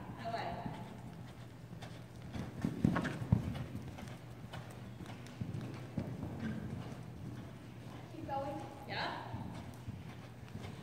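Horse hoofbeats on the sand footing of an indoor arena as horses canter and jump, with a cluster of louder hoof thuds about three seconds in.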